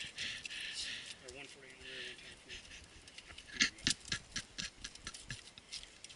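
A quick, irregular run of clicks and light knocks about halfway through, from a mud-clogged fat bike's parts being handled during a trailside repair of a chain that keeps dropping off. A faint voice murmurs before it.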